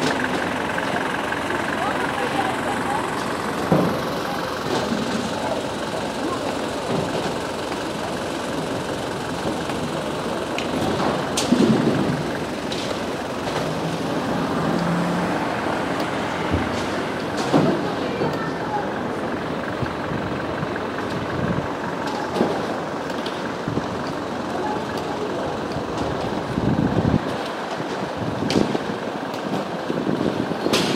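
Outdoor city street ambience: indistinct chatter of passers-by over traffic noise, with a few brief knocks and clatters.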